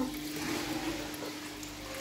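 Water splashing and trickling steadily from an aquarium filter's outlet into a freshly filled fish tank, with a steady hum underneath.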